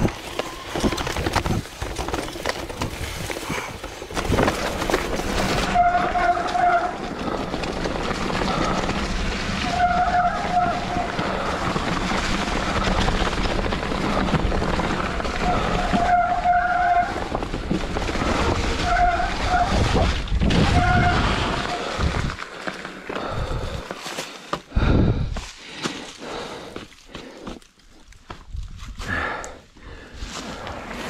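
Mountain bike descending a rough forest trail: steady rolling noise and rattle from tyres and bike, with short squeals about a second long, typical of disc brakes, several times from about six seconds in. The noise drops and turns patchy in the last third.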